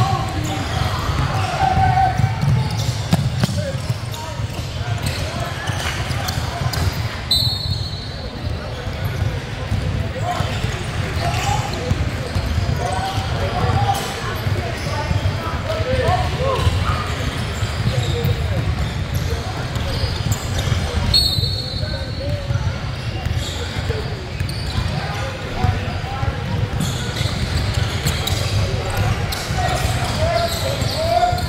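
Basketball dribbling and bouncing on a hardwood gym floor, with indistinct voices of players and spectators echoing in the large hall. Sneakers squeak briefly twice.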